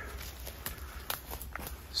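Footsteps through leafy forest undergrowth: a few irregular, faint crunches as a hiker walks on.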